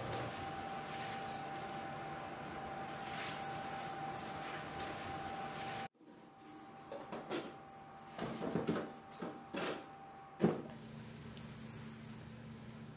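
Estrildid finches in an aviary giving short, high chirps, roughly one a second. In the second half come several knocks and rustles, with one sharp knock about ten seconds in.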